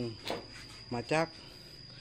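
A steady high-pitched whine at one pitch, under a few spoken words about a second in.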